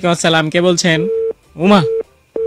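Speech, with a short steady telephone tone heard between phrases about a second in and again briefly at the end.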